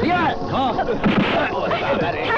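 Several men shouting and yelling over one another in a scuffle, mixed with heavy booming hits.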